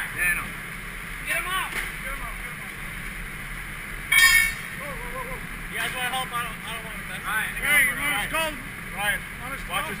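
Voices of several people calling out, with one brief, loud, high-pitched sound about four seconds in, over a steady low hum.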